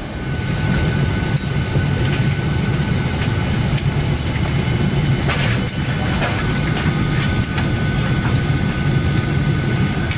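Steady low hum of a parked Boeing 737-800's cabin ventilation, with a thin steady whine and scattered light clicks and knocks.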